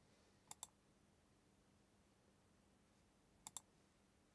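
Near silence broken by two quick double clicks of a computer mouse, the first about half a second in and the second near the end.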